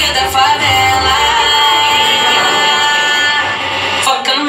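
A recorded pop song with singing: a sung vocal over a heavy bass beat, the bass dropping out about a second and a half in and leaving long held vocal notes.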